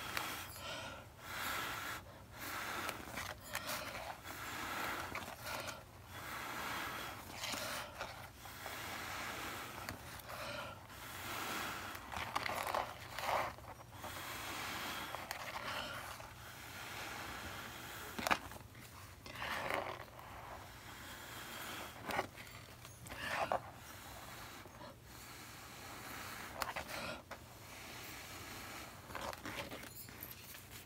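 A person blowing hard in repeated breaths onto wet acrylic paint, short irregular gusts of air every second or two with breaths drawn in between, pushing the paint outward into a bloom.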